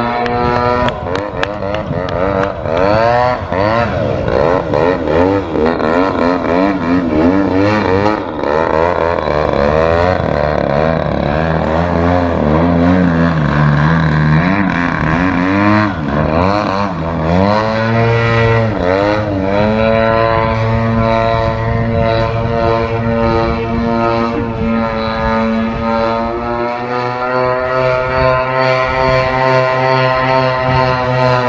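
Engine and propeller of an 85-inch Extra 300 EXP aerobatic model airplane, its pitch rising and falling as the throttle changes through the manoeuvres. About halfway through there are sharp pitch sweeps as it makes a low pass, and near the end it settles into a steadier drone.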